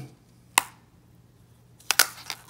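Sharp clicks of an x-ray positioning marker being put back onto a phone case: one click about half a second in, then a quick cluster of louder clicks near the end as it is pressed down, with a faint steady hum in between.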